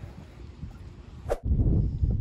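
Faint low noise, a sharp click about a second and a half in, then loud low rumbling noise on the microphone.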